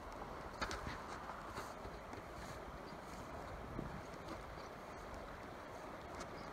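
Steady rush of a shallow, riffled river current flowing around a wading angler, with a couple of faint knocks about half a second in and again past the middle.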